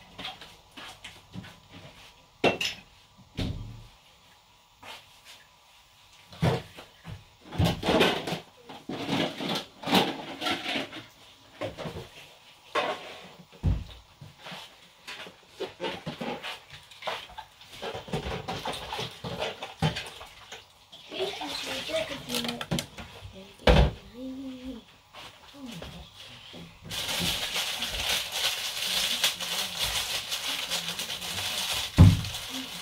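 Kitchen clatter: dishes, pots and a plastic bowl being handled, knocked and set down, with scattered sharp knocks, the loudest a few seconds before the end. About three seconds before the end a steady hiss sets in.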